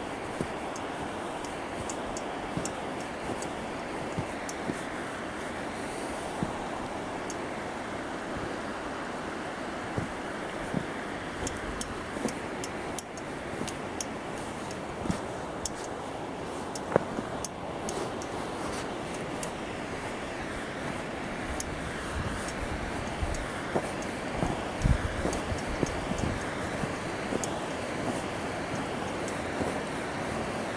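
Steady rushing of a shallow river running over rocks, growing a little louder in the last third, with scattered crunches and knocks from someone walking through snow with the camera, and some wind on the microphone.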